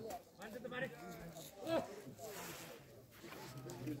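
Voices of people talking and calling out, with a count of "one" near the start.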